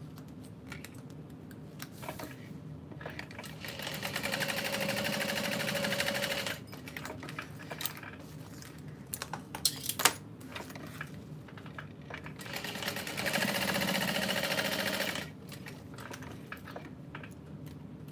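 Juki industrial sewing machine stitching in two short runs of about three seconds each, the first starting about three seconds in and the second just past halfway, with a sharp click between them.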